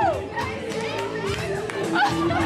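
Dance music with a regular beat over the voices of a crowd with children on a dance floor. A held high note glides down and breaks off just after the start.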